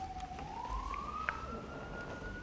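A single thin tone that glides slowly up in pitch over the first second and a half, then holds steady. A faint click comes a little past the middle.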